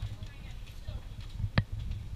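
Uneven low rumble of a handheld camera being handled against a capsule window, under faint indistinct voices, with one sharp knock about one and a half seconds in.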